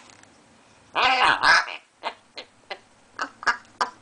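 African grey parrot giving a short two-part call about a second in, followed by a run of about six sharp clicks.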